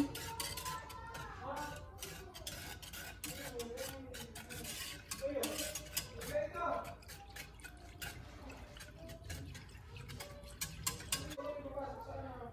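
Wire whisk stirring liquid in a metal saucepan, with rapid, irregular clicks and scrapes of the wires against the pot, as gulaman powder is mixed into cold water. A faint voice runs underneath.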